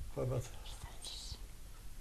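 Quiet speech: one short spoken syllable, then a brief soft hissing 'sh' sound about a second in.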